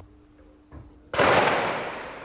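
A single sudden blast about a second in, its long echo dying away over a second or so, heard in a besieged city at night.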